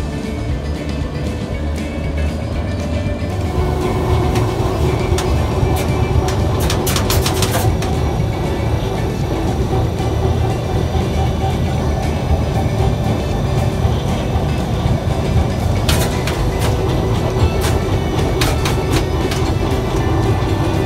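Running noise inside the cab of a vintage electric locomotive on the move: a steady hum from the traction equipment, with clusters of sharp clicks and rattles about seven seconds in and again near the end. Guitar music fades out in the first few seconds.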